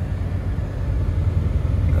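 Low, steady engine rumble heard from inside a vehicle's cab as it idles.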